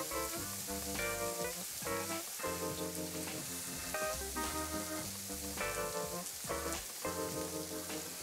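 Background music with changing chords over a steady sizzle of lobster heads, onion and shallot frying in oil in a wide pan.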